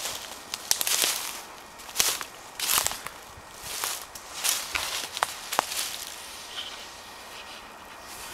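Footsteps through dry fallen leaves, roughly one step a second, with a few sharp snaps of twigs; the steps stop after about six seconds.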